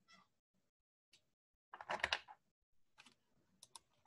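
Faint scattered clicks, with a brief rustling noise about two seconds in and a few sharp ticks near the end.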